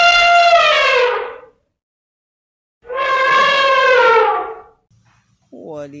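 Elephant trumpeting: two long calls, each about two seconds, with the pitch dropping at the end of each.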